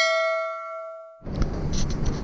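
A bright bell-like ding, the notification-bell sound effect of a subscribe-button animation, ringing out with several pure tones and fading over about a second. It stops abruptly a little over a second in, and a rough rumbling noise with a few knocks takes over.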